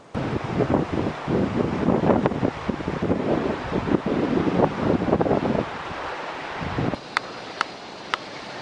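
Wind buffeting the camera microphone in irregular gusts, starting abruptly and dropping away about seven seconds in, after which come two short sharp clicks.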